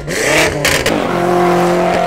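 BMW F90 M5's S63 twin-turbo V8 revving hard under throttle, its pitch dipping and climbing, then holding one steady note for about the last second.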